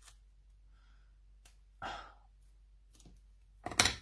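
Scissors set down on a glass craft mat near the end: a few sharp clacks close together. Before that, the room is quiet apart from one soft, brief sound about halfway.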